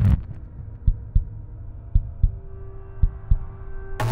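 Heartbeat sound effect: paired low thumps about once a second over a low drone, with a faint steady tone coming in about halfway through.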